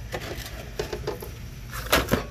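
Wall-decor pieces, a wooden frame and cardboard-packaged art sets, being handled and shifted on a store shelf. Several light knocks and rattles end in two sharper knocks near the end.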